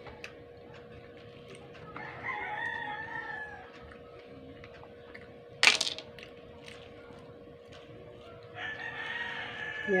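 A rooster crowing twice, each crow about a second and a half long and some six seconds apart. A single sharp click falls between them, over a faint steady hum.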